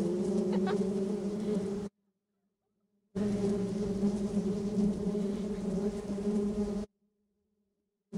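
Honeybee swarm buzzing in a steady drone. It cuts out to dead silence twice, for about a second each time.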